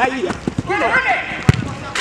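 Players shouting during a turf football match, with a single sharp thud of the football being struck about one and a half seconds in.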